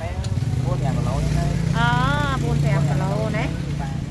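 People talking over the steady low hum of a motor vehicle's engine, which grows louder shortly after the start and is strongest in the middle.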